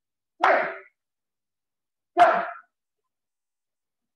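Speech only: a man shouting "Go!" twice, about two seconds apart, with dead silence between the shouts.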